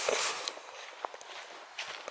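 Footsteps of a walker on a wet woodland path strewn with fallen leaves, with soft crunching and a few small clicks over a steady hiss.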